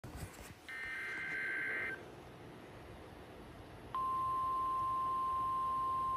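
Weather radio receiver's speaker sounding an Emergency Alert System activation. First comes a warbling burst of SAME digital header tones lasting about a second. About two seconds later the Weather Radio's single steady warning tone starts, the alarm that comes before a broadcast warning.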